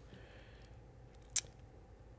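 A pause in a conversation: faint room tone with a single short, sharp click a little past halfway.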